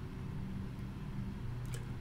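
Room tone between words: a steady low hum, with a faint click near the end.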